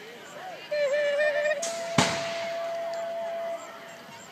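BMX starting gate cadence: a wavering call, then a steady electronic tone held about two seconds, with the gate dropping in a single sharp bang about half a second into the tone.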